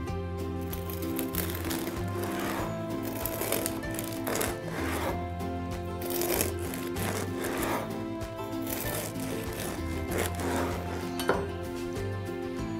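Background music with sustained notes, over the repeated rasping strokes of a serrated bread knife sawing through a crusty cornmeal ciabatta on a wooden board.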